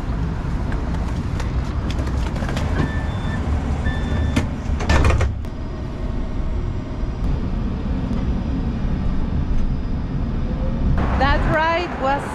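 Tram boarding: a steady low rumble and passenger bustle, two short electronic beeps about three and four seconds in, then a loud bump near five seconds as the doors shut. After that the sound turns duller and the tram's low running rumble carries on, with voices near the end.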